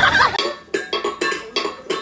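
A burst of music near the start, then rapid repeated clinking of a small steel bowl being knocked about on a tile floor, about four clinks a second.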